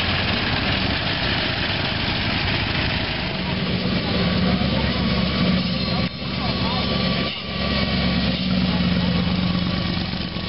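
Car engines running as cars drive slowly past: first a 1920s-era sedan, then open T-bucket hot rods with exposed engines. A steady low engine drone sets in about three seconds in.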